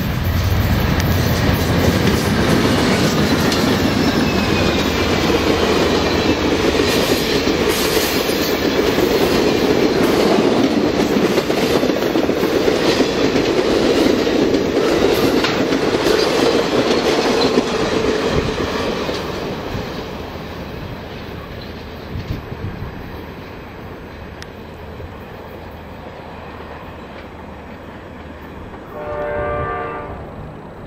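A passenger train passing close by, led by a GE C40-9W diesel-electric locomotive: the heavy running of the locomotive, then a steady rumble and clatter of wheels on the rails as the cars roll past. The sound fades from about 18 seconds in as the train moves away. Just before the end a short horn note sounds.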